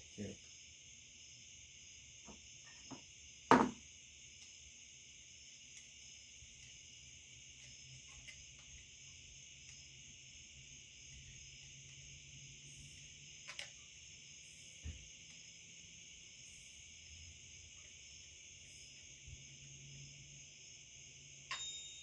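Mostly quiet, with a few isolated clicks and knocks of a screwdriver and metal parts as the buttstock is screwed back onto a Marlin 1894C lever-action rifle. The sharpest knock comes about three and a half seconds in, and a faint steady high-pitched hiss runs underneath.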